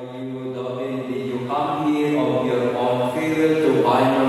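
A priest chanting a liturgical prayer into a microphone, holding long steady notes that step up and down in pitch.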